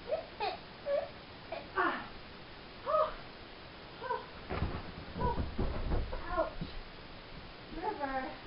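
A pet dog whining in a string of short, high, rising and falling whines, with some dull knocks on the carpeted floor in the middle.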